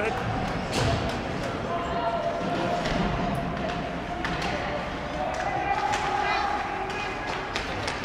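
Ice hockey play heard from the stands: scattered sharp knocks and clacks of sticks and puck on the ice and boards, over a steady background of crowd chatter and rink noise.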